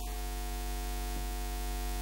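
Steady electrical mains hum with static hiss from a microphone and PA system, unchanging throughout.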